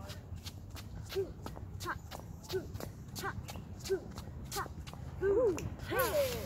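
Dance footwork: shoes tapping and scuffing on a concrete floor during Charleston side kicks, in a steady rhythm of about one and a half steps a second, with a short squeak at most steps.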